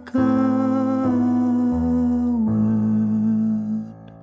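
One man's voice multitracked into layered vocal harmony, holding a sung chord. The lower parts shift under a sustained top note, and the chord cuts off just before the end, leaving a fading reverb tail.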